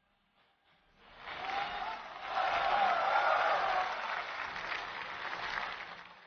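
Audience applause that swells up about a second in and fades away near the end.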